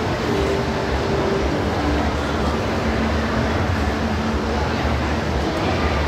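Crowd murmur in a large indoor exhibition hall: many voices talking at a distance over a steady low rumble.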